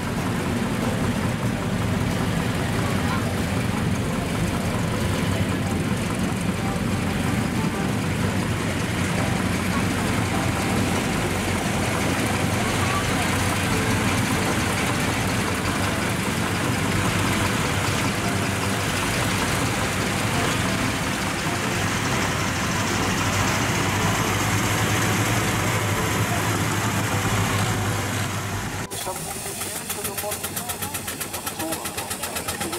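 Several tractor engines running and idling together in a steady low drone, with people's voices over them.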